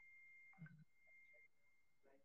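Near silence, with a faint steady high tone that fades out after about a second and a half.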